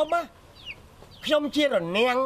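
A man's voice in short, strongly inflected phrases: a brief bit at the start, a pause of about a second, then more from about halfway through.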